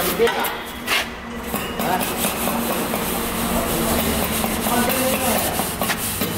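Wooden straightedge scraping and rubbing across fresh cement plaster as the surface is levelled, with a sharp knock about a second in.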